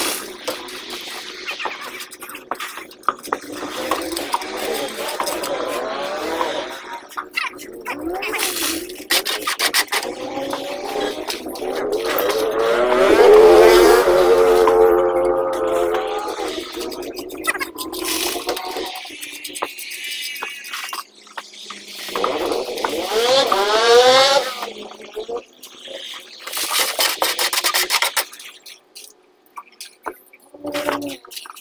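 Scraping of wet concrete being hand-mixed and worked on a slab, in irregular strokes. Voices call out in the background, loudest in the middle and again about three-quarters of the way through.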